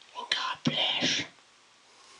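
A man's voice whispering a few breathy words for about a second.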